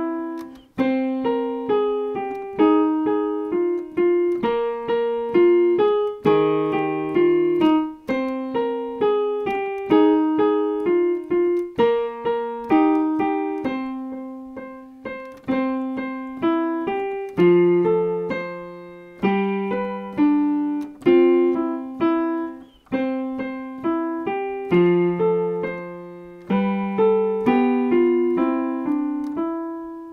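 Digital piano playing a two-handed melody with chords in the key of C, moving between C Ionian (major) and the parallel C Aeolian (natural minor). The bright major sound turns melancholy. Notes are struck at an even, unhurried pace, with deeper bass notes in the second half.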